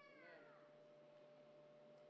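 Near silence: room tone with a faint steady hum, opened by a brief, faint falling voice-like sound.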